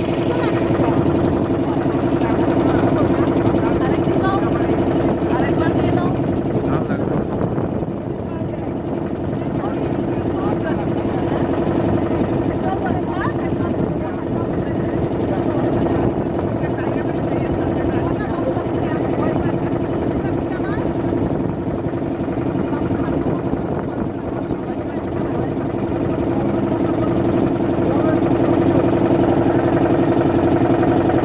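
A motor boat's engine running steadily with a constant hum, along with people's voices.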